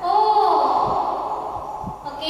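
A woman's voice holding one long, drawn-out vowel that falls slightly in pitch and fades over about a second and a half.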